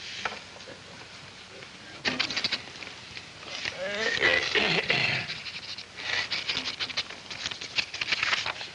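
Pen scratching on paper in quick strokes, in two spells of writing, with a few voices chuckling and murmuring in between.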